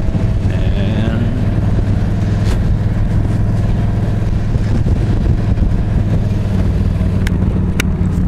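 Yamaha V-Star 1300's V-twin engine running steadily at cruising speed, mixed with wind rush, heard from the rider's seat. There are a few sharp clicks near the end.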